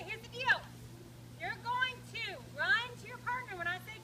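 Speech: a woman talking to a group of children, over a steady low hum.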